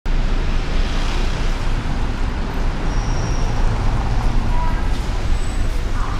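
City street ambience: a steady rumble of road traffic with the voices of passers-by mixed in.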